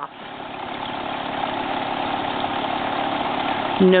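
Small dirt bike engine running steadily, growing gradually louder over the few seconds.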